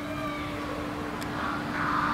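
Background noise with a steady low hum and no distinct event.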